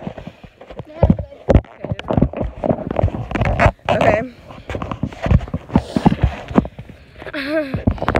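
Irregular knocks and rubbing of a phone being handled right at its microphone as it changes hands, with a short stretch of voice about halfway and again near the end.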